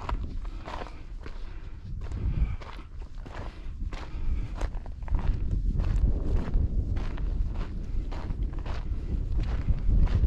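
A hiker's footsteps on a mountain trail at a steady walking pace, about two steps a second, over a low rumble that grows louder about halfway through.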